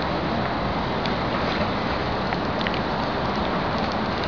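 Steady, fairly loud rushing outdoor noise with no distinct source, with a few faint short high ticks now and then.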